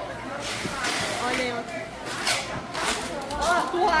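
Indistinct chatter of several people talking at once in a crowded room, with no one voice standing out.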